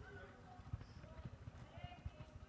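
Near silence: quiet room tone with faint low knocks and a few faint, brief tones.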